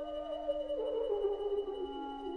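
A chamber ensemble of clarinet, bassoon, horn and strings plays a soft, slow passage, with the cello bowing. A steady low held note sits under a quiet melody that steps downward.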